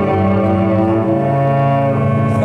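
Instrumental passage of a live band: hollow-body electric guitar and acoustic guitar, with long sustained low notes under them and no singing.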